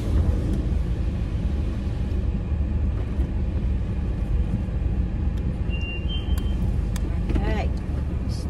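Automatic car wash machinery heard from inside the car's cabin: a steady low rumble, with a few faint clicks and brief high tones partway through.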